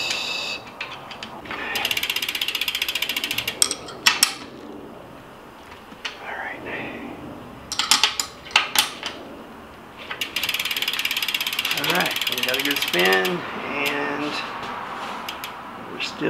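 Ratchet wrench tightening the rear axle nuts of a single-speed dirt jump bike: two long runs of rapid ratchet clicking, with a few sharp metal knocks in between.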